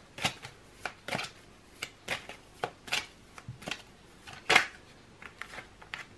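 Tarot deck being shuffled by hand: an irregular string of short card snaps and taps, about two a second, the loudest about four and a half seconds in.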